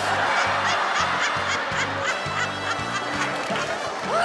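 Studio audience laughing, with background music underneath.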